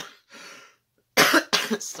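A woman coughing: a short cough and a fainter one, then two loud coughs a little over a second in, from choking on her own saliva.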